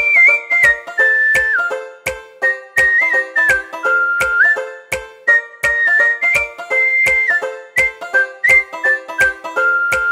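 Background music: a whistled melody over plucked-string chords and a steady drum beat.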